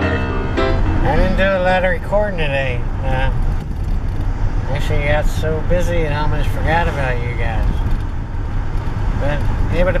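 A man talking inside a moving vehicle's cab over the steady low rumble of the vehicle driving.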